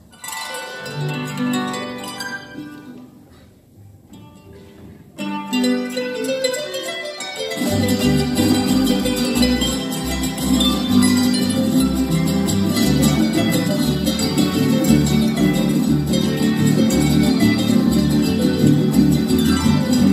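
Son jarocho ensemble of Veracruz harp with jaranas and guitars playing an instrumental introduction: it starts with sparse plucked notes, fills out about five seconds in, and a steady bass line joins about seven and a half seconds in.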